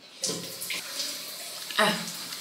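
Bathroom tap turned on, its water running steadily into the basin.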